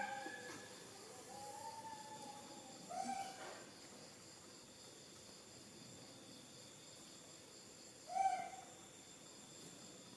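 Baby macaque giving soft, high, pitched coo calls: a faint drawn-out one about a second in, a short one about three seconds in, and a louder short one about eight seconds in.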